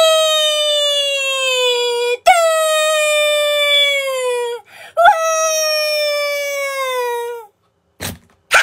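A voice wailing in mock crying: three long, high cries, each about two seconds and sliding slowly down in pitch, with short breaks between them.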